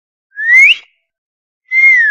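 Two-note whistle sound effect in the shape of a wolf whistle: a short rising note, then about a second later a longer note that lifts slightly and falls away.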